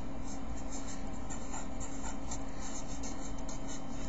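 Marker pen writing a word on paper: a string of short strokes over a steady low hum.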